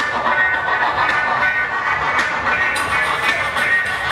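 Loud dance music played by a DJ over a nightclub sound system, heard from beside the DJ booth.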